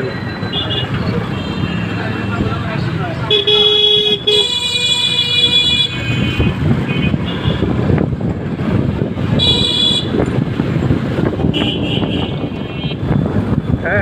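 A motorcycle riding along a busy market street, with steady engine and road noise and horns tooting several times, one long toot about three seconds in and shorter ones later on.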